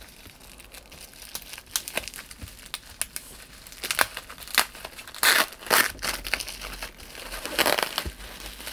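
Bubble-wrap plastic packaging being cut and pulled open by hand, crinkling and crackling, with several louder rustles of the plastic in the second half.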